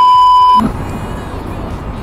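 Test-tone beep of the kind played with TV colour bars, a steady high tone lasting about half a second that cuts off abruptly. Low background noise follows.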